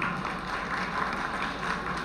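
Audience applauding, a steady patter of clapping.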